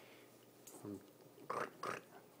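Mostly quiet room tone with a few brief fragments of a man's voice, a short hesitant utterance about a second in and two more short sounds near the end.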